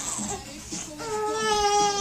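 A young child's high voice: one long wailing cry that starts about a second in and slides slowly down in pitch.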